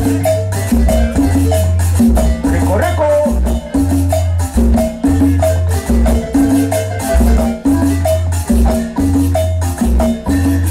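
Marimba ensemble playing a danzón at an even, moderate pace: repeated mallet notes over steady low bass notes, with light percussion keeping the beat.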